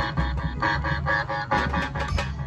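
Dhumal band music: a Sambalpuri song played on the band's sound rig, a quick, steady pulse of melody notes over deep bass.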